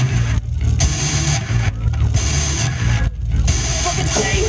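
Live rock band playing an instrumental passage with drums, bass and electric guitar. The higher parts drop out for short moments three times while the low end keeps going.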